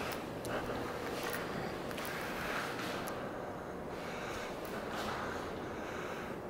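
Low steady room noise with a few faint soft taps of footsteps as someone walks through a gallery.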